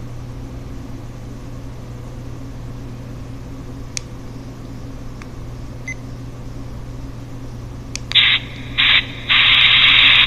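A steady low hum with a couple of faint clicks and a short beep near six seconds. About eight seconds in, loud hissing pink-noise static starts, chopped on and off in irregular bursts.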